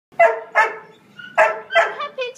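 A dog barking four times, in two quick pairs.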